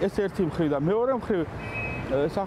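A man speaking, with street traffic running behind; a faint, steady high tone sounds briefly in a pause near the end.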